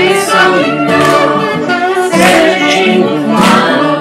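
Music: a group of voices singing together in layered harmony.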